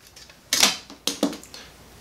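Light clicks and taps of hand tools being handled and set down on a desk: one sharper tap about half a second in, then a few softer clicks around a second in, as a screwdriver is laid down.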